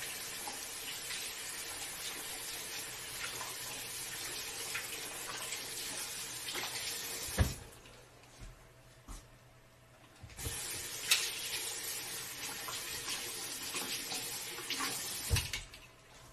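Bathroom sink faucet running as eyeglasses are rinsed under it. The water is shut off about seven seconds in with a small knock, turned back on about three seconds later, and shut off again near the end.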